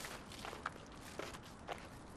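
Faint footsteps on pavement, a few separate steps spaced about half a second apart.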